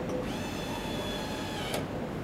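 Motorized gantry of an LCD panel laser repair machine travelling: a high, multi-tone motor whine that rises as it starts, holds steady for about a second and a half, then stops with a click.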